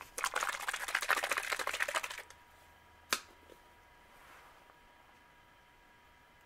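A plastic bottle of pearl black airbrush paint being shaken hard: a rapid rattle of liquid and plastic for about two seconds, followed by one sharp click about a second later.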